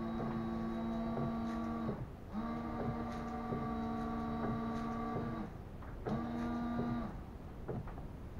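Car windscreen washer pump running in three bursts, a steady electric whine, each burst spraying water onto the windscreen while the wipers sweep. A few faint clicks follow near the end.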